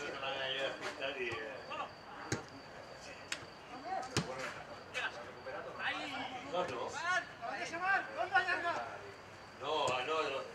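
Players shouting across an outdoor football pitch, with several sharp knocks of the ball being kicked, the strongest about two and four seconds in.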